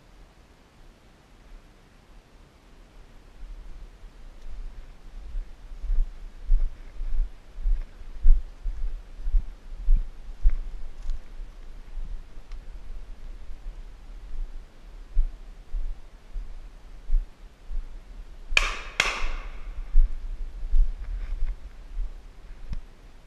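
Deep thuds of footsteps and handling on the filmer's camera, with two sharp cracks about half a second apart near the end.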